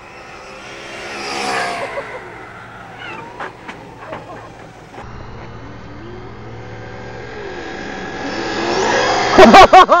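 Traxxas Slash 4x4 brushless RC truck running at speed past the camera, its on-board audio speaker playing a simulated engine sound that rises and falls in pitch as it comes and goes. A few sharp ticks in the middle; the sound builds to its loudest near the end.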